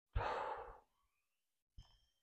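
A man's sigh: one breathy exhale about half a second long, close to the microphone, followed near the end by a faint click.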